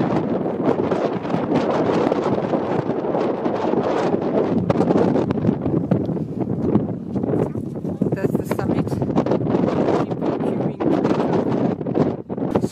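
Loud, gusty wind buffeting the camera microphone, an uneven rough noise that swells and dips throughout.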